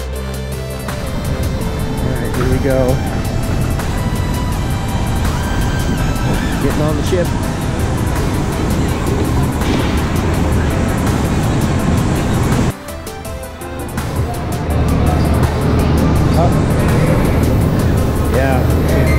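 Background music mixed with vehicle noise and distant voices from a car-ferry loading ramp. The sound drops briefly about thirteen seconds in.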